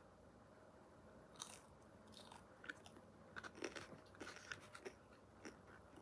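Close-up chewing of pepperoni pizza, a mouthful being chewed with irregular small clicks and crunches, starting about a second and a half in.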